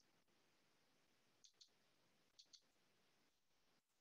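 Near silence broken by two faint pairs of computer mouse clicks, about a second apart.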